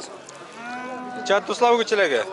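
A cow mooing: one long, steady moo starting about half a second in, with men's voices and market chatter around it.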